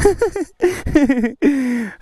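A man's voice making short wordless exclamations, ending in a drawn-out call that falls in pitch.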